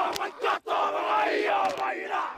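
A rugby league youth team performing a haka: many young men's voices shouting the words in unison, with a few sharp slaps and a short break about half a second in.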